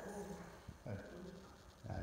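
Old English Sheepdog puppy vocalizing with a few short pitched sounds while being petted on a platform.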